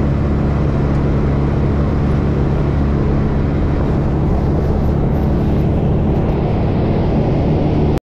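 Vehicle engine running steadily with a low, even hum, heard from inside the cab.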